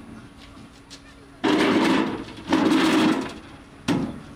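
A person's voice: two loud shouts, each under a second, the first about a second and a half in and the second after a short gap, with a brief sharp sound near the end.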